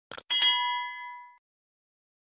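Two quick click sound effects, then a bright notification-bell ding that rings with a clear tone and fades out within about a second.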